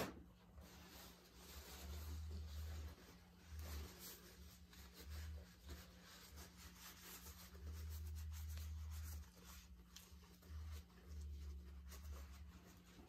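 Faint room tone: a low hum that swells and fades in irregular stretches, with light rubbing noises and a single click at the start.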